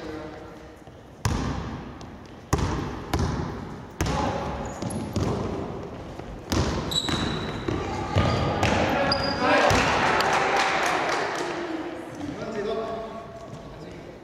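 Basketball bouncing on a hardwood gym floor: a handful of sharp bounces that ring in the large hall. Players' voices call out during play, growing louder for a couple of seconds past the middle.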